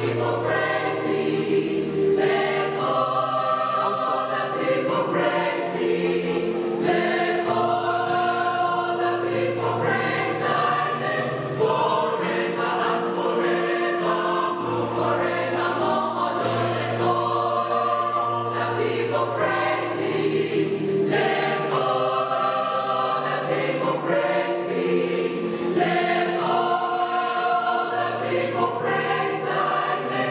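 Mixed choir of men's and women's voices singing a gospel song in harmony, in phrases of held chords a few seconds long.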